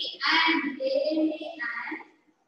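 A voice in slow, drawn-out, sing-song speech or chanting.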